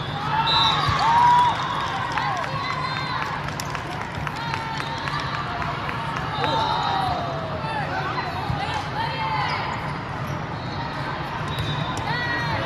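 Athletic shoes squeaking on an indoor sport court as volleyball players move through a rally, with sharp smacks of ball contacts, over the steady background chatter and hum of a large gym hall. Loudest about a second in.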